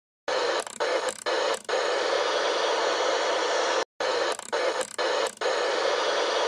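Static-like electronic noise from an intro sound effect. It has three short dropouts in its first second and a half, cuts off sharply, then plays again the same way.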